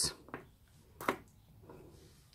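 Quiet handling of a small stretched canvas and a plastic paint cup, with one light tap about a second in.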